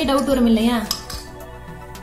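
A metal screw-cap jar lid knocking and clinking against a glass jar as it is lifted off and set down on the table, over background music with a singing voice.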